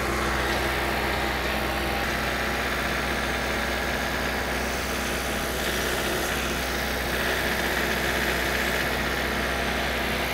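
Compact utility tractor's diesel engine running steadily as the tractor moves up to the stump on its loader forks. A faint high whine sits over the engine drone at times.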